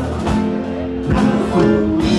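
Live band playing upbeat dance music, with guitar over a drum kit and hand percussion keeping a steady beat.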